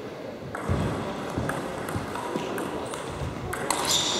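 Table tennis ball being hit back and forth in a rally, clicking off the rackets and the table about every half second.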